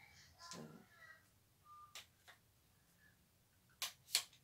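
Near silence with a few faint clicks from a ring-light tripod stand being handled as its legs are extended, a single sharper click near the end.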